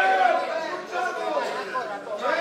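Several people's voices shouting and talking over one another, with no clear single speaker.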